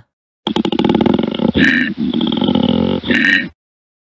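Koala bellowing: a deep, rapidly pulsing, grunting call lasting about three seconds, with two brief higher-pitched swells, cut off abruptly.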